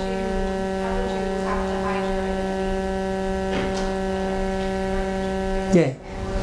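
Steady electrical mains hum in the audio system, a buzz with many evenly spaced overtones holding at one level, with a faint, distant voice underneath. Near the end the hum is briefly broken as a close voice comes in.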